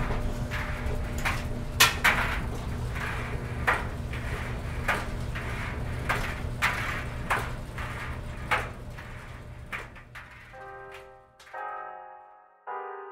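Eerie sound-design ambience: a low steady hum under irregular sharp clicks and hissy swells, fading out about ten seconds in. Soft piano chords start near the end.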